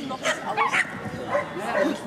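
Dog barking repeatedly in short, pitched barks, about three a second, with voices in the background.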